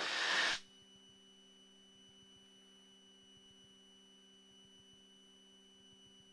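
A hiss for about half a second that cuts off, then a faint steady electrical hum of several fixed tones, the idle noise of a headset intercom feed with its voice-activated mic gate closed; no engine noise comes through.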